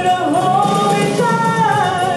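A man and a woman singing a duet through microphones, backed by a small live band with upright bass and guitar.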